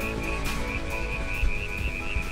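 A high, warbling whistle pulsing about four times a second over the tail of soft background music: an audio logo sting.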